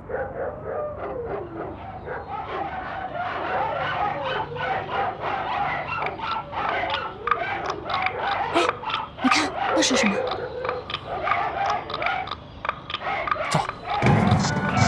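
Many dogs barking and yelping at once, a dense unbroken chorus, with a few high falling yelps near the middle.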